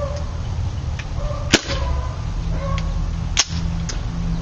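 Two sharp metallic clacks about two seconds apart from the action of a KWA MP7 gas-blowback airsoft submachine gun as it is handled with its bolt locked back on an empty magazine.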